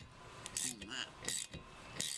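A ratchet with a 13mm socket clicking in short bursts about half a second apart as it works the rear wiper arm's retaining nut.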